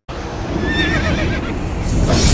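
Dramatic sound effect that cuts in suddenly: a wavering, whinny-like creature cry over a heavy low rumble.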